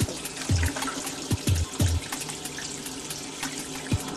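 Urinal flushing: a steady rush of running water. Background music with a drumbeat plays over it.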